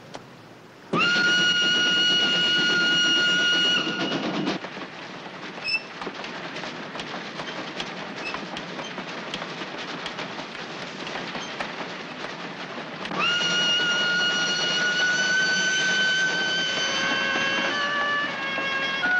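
Steam locomotive whistle blowing two long, steady blasts: one begins about a second in and lasts about three seconds, the other begins about thirteen seconds in and runs on. Between them the moving train rattles, with rapid clicks of the wheels over the rails.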